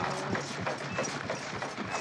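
A motel's vibrating massage bed rattling and knocking rapidly and unevenly.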